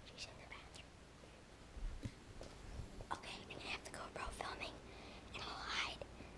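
A boy whispering close to the microphone, a few soft breathy phrases, mostly in the second half.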